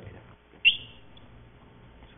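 A single short, high-pitched squeak about two-thirds of a second in, rising quickly then briefly held; otherwise faint room tone.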